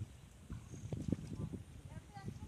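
Water sloshing and splashing as two men wade through a shallow pond, dragging a seine net, with a run of irregular low knocks and splashes in the middle.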